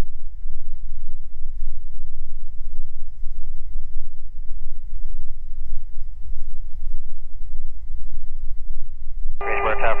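Low, steady drone of the Beechcraft G58 Baron's twin piston engines and propellers at low power, heard inside the cabin while the plane taxis. Near the end a tower radio call comes in over the headset.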